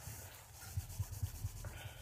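Faint rubbing with a few soft, irregular low bumps in the middle: handling noise from a hand-held phone's microphone.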